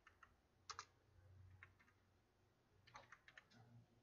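Faint keystrokes on a computer keyboard as numbers are typed: a few separate key presses, then a quick run of them about three seconds in.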